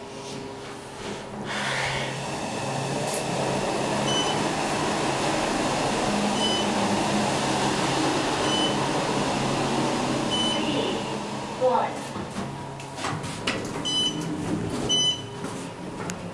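Otis Series 5 scenic elevator car travelling down: a steady hum and rush of the moving car for about ten seconds, with a short high beep about every two seconds. Then a click as it comes to a stop, and more clicks and clunks as the doors open.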